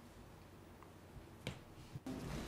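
Near-silent room tone with one short, sharp click about one and a half seconds in.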